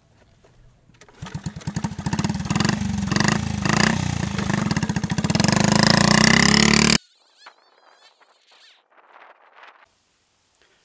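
1971 Honda Monkey bike's small single-cylinder four-stroke engine starting about a second in and running with a fast, buzzy beat, then revving higher as the bike pulls away; the sound cuts off suddenly about seven seconds in.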